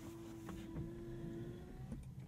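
Bentley Flying Spur Hybrid being switched on: a faint steady electronic tone that stops near the end, with a few small ticks and no engine running.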